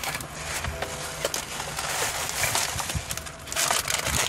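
Clear plastic packaging rustling and crinkling as it is handled, with irregular crackles that grow denser near the end.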